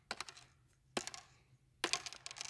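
Plastic juggling clubs clacking against one another as they are caught and gathered into one hand: a few sharp clicks, in three small clusters.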